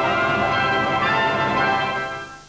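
Opening theme music of a cartoon, a dense wash of many bells ringing together.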